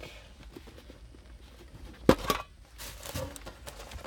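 Metal trading card tin being handled and opened: quiet rubbing, then one sharp metallic clank about two seconds in, followed by a few lighter clicks.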